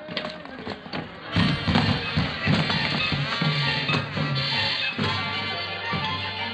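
A few sharp knocks in the first second or so, then a loud musical bridge from a radio studio orchestra, marking the passage of time in a radio play.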